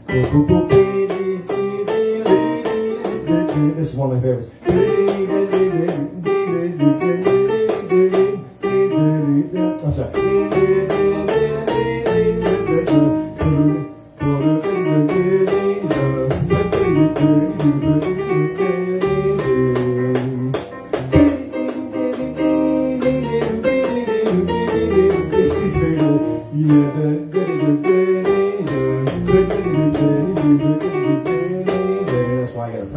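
Electronic keyboard playing an instrumental tune: a melody line over steady chords and bass, with a few brief breaks between phrases.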